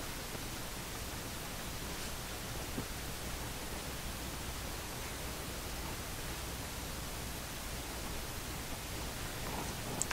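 Steady low hiss of background room noise, with no distinct sound standing out.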